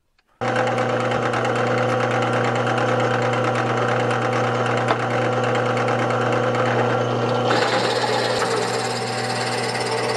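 Drill press motor running with a steady hum. It begins suddenly just under half a second in. About three-quarters of the way through, the bit starts cutting into the wooden disc held in a jig, adding a rougher, brighter cutting noise.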